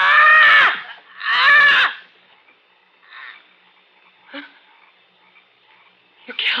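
A woman screaming in a struggle, two long anguished cries one after the other, then two brief faint sounds.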